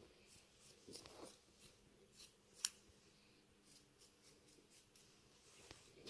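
Scissors cutting through a stockinette sleeve, a series of faint, irregular snips with one sharper snip about two and a half seconds in.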